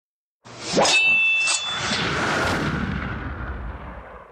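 Intro sound effect: a few sharp metallic hits with a bright ringing tone, then a swell that fades slowly away.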